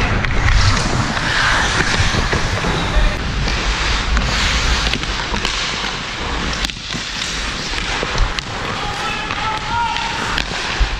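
Ice skate blades carving and scraping across the ice, with sharp clacks of hockey sticks on the puck now and then, heard from a helmet-mounted camera with wind rumbling on the microphone.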